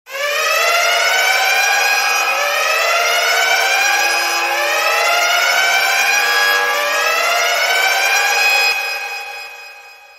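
Loud siren-like wailing: a pitched tone rising in overlapping sweeps about every two seconds, dropping off near the end and fading away.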